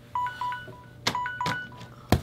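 Smartphone ringtone: a short phrase of bright beeping notes that plays twice, with a couple of sharp knocks partway through.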